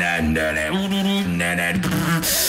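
Beatboxer performing live into a handheld microphone: a held, hummed tone broken into short phrases over deep vocal bass, with hissing high snare and hi-hat sounds.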